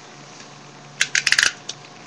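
A quick run of about six sharp plastic clicks about a second in, a Beyblade launcher being readied for the launch, over a quiet room.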